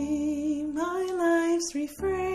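A hymn sung over instrumental accompaniment. The voice holds one long note, then moves up to a second, slightly higher held note.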